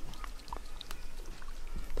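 Faint river water trickling and lapping at the bank, with a few small scattered plinks.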